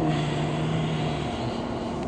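Steady mechanical hum, with a low drone that stops about a second and a half in.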